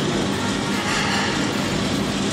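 Commercial conveyor toaster running with a steady hum and rush of noise as its belt carries bread past the glowing heating elements.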